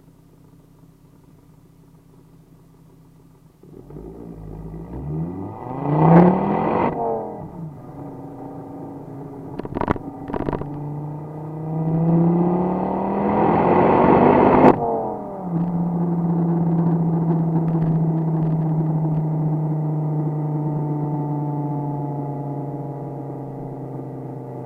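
Ford Focus ST225's turbocharged five-cylinder engine heard at its tailpipe: a faint idle, then about four seconds in the revs climb and fall back. Two sharp exhaust pops come just before the revs climb again, and a crack comes as they cut off. It then settles into a steady drone that slowly drops in pitch.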